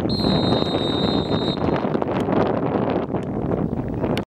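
A referee's whistle blown in one steady blast for about the first second and a half, over a steady rush of wind on the microphone.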